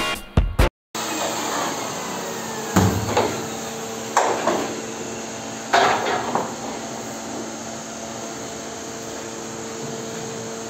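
Background music briefly at the start, then a steady hum of workshop machinery with three sharp clacks and knocks spread a second or so apart as the metal toggle clamps on the cutting jig are handled and the freshly trimmed plastic side skirt is lifted off it.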